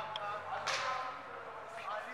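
Faint distant voices, with one sudden sharp swish-like noise less than a second in.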